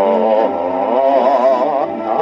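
A 1956 Japanese popular song playing from a 78 rpm record on a Paragon No. 90 phonograph. A long held note wavers with a strong vibrato, and the music moves on near the end.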